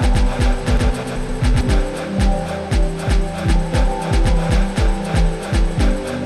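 Live electronic music: a kick drum falling in pitch about twice a second, crisp hi-hat ticks and held synth chords, played from a laptop-and-controller setup.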